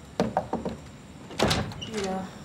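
Knocking on a glass-paned wooden door: three quick raps, then a louder burst of knocking about a second and a half in.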